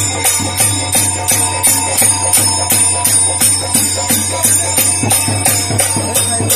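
Faruwahi folk dance music: jingling metal percussion struck in a steady beat, about three to four strokes a second, over a steady low note.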